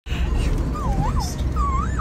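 Steady low rumble of road and engine noise inside a moving car's cabin. A thin, high voice slides up and down twice over it, about a second in and again near the end.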